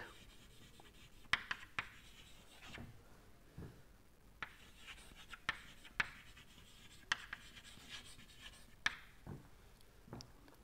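Chalk writing on a chalkboard: faint scratching strokes and sharp little taps at irregular intervals as words are written.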